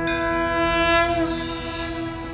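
Sustained horn-like chord of a TV graphics sting, held steady for about two seconds, with a bright high swish sweeping through it about a second in.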